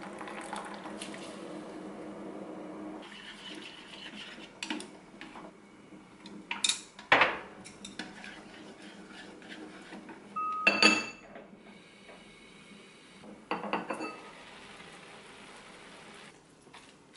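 Water pouring into an earthenware pot for the first few seconds. Then wooden chopsticks stirring and tapping against the pot, with scattered sharp clinks; the loudest come about seven and eleven seconds in, and the second rings briefly.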